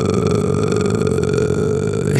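A man's voice held on one long, low, gravelly vowel in vocal fry, a steady rattling growl without a break, the "pure fry" sound of a deep metal vocal.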